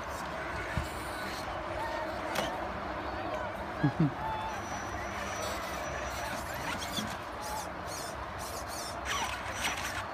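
Traxxas Summit RC crawler's brushless motor, run by a Tekin RX8 Gen2 with a 1900kv motor, giving a faint high whine that comes and goes as it crawls over rocks. This sits over a steady background hiss. A couple of short, loud voice sounds come about four seconds in, with a few light knocks.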